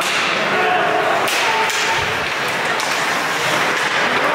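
Ice hockey play in a rink: a sharp crack about a second in, like a stick striking the puck, over the scrape of skates on the ice and scattered voices.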